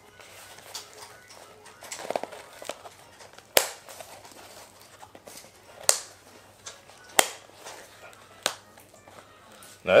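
Four sharp clicks, a second or more apart, from a Peloton cycling shoe being handled, with low rustling between them.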